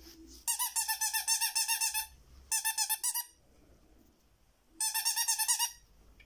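Small squeaky pet toy sounding in three bursts of fast, warbling squeaks, each held on one pitch: the first lasts about a second and a half, then a short one, then another near the end.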